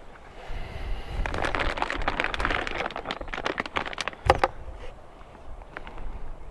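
Clear plastic fish-shipping bag crinkling and rustling as it is handled and lifted out of its foam-lined box, a dense crackle that is loudest through the first half and then fades.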